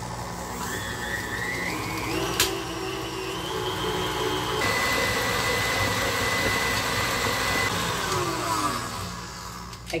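KitchenAid tilt-head stand mixer running, its wire whisk beating cream cheese and sugar. The motor's whine steps up in pitch as the speed is raised, with a single click about two and a half seconds in, then winds down and stops near the end as the mixer is switched off.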